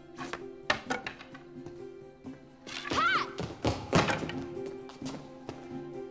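Wooden practice swords knocking: a few sharp clacks in the first second and another loud one about four seconds in, over background film music, with a short vocal exclamation about three seconds in.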